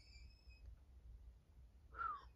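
Near silence: room tone, with a faint thin high squeak during the first half-second or so.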